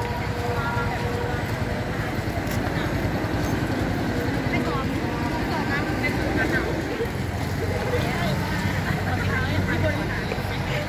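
Busy street ambience: students chattering over the steady rumble of passing cars and motorcycles, with the low engine rumble louder near the end.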